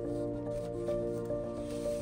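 Background music: soft instrumental backing with sustained notes that shift in pitch over a low held tone.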